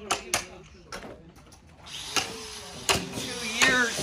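Footsteps on loose dirt and gravel: a series of sharp separate steps, with a steady outdoor hiss coming in about halfway through. A brief voice sound comes near the end.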